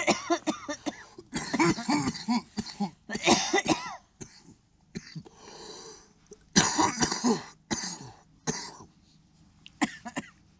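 A man coughing hard in several fits after taking bong hits, with a lull of a couple of seconds in the middle.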